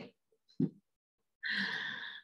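A woman's audible breath through the mouth, a soft hiss lasting most of a second, starting about a second and a half in. A brief faint sound from her comes just before it, about half a second in.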